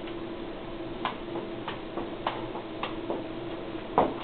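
Footbag striking the player's shoes during a freestyle trick combo: about half a dozen short, sharp taps at irregular intervals, roughly every half second, over a steady low room hum.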